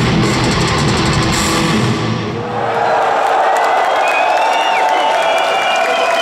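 Heavy metal band playing live, with distorted electric guitar and drum kit, until the song stops about two and a half seconds in. A large audience then cheers, with some whistles.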